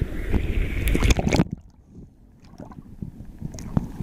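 Stream water rushing and splashing close to the microphone at a small cascade over limestone, with a heavy low rumble and scattered knocks. About a second and a half in, the level drops abruptly and the water carries on much fainter.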